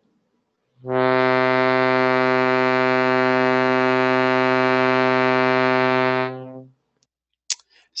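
Shruti box sounding one steady drone on the note C, its vibrating reeds giving a dense stack of overtones; it starts just under a second in, holds for about five seconds, and fades out.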